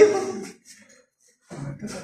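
A man's shouted coaching cuts off about half a second in, followed by a second-long pause before more shouting begins near the end.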